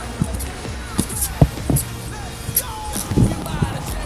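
Inline skates knocking on stone steps as the skater climbs them: a few irregular, sharp thuds, the loudest about a second and a half in.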